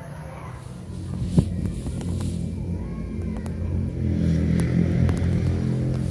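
A low, steady engine hum that swells about a second in and grows louder toward the end, with one sharp knock about a second and a half in.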